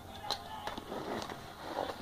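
Utility knife slitting packing tape on a cardboard box, with a few short scratches and clicks. Quiet background music plays underneath.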